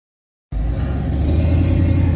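Steady low rumble of vehicle engine and road noise heard from inside a moving vehicle, starting about half a second in.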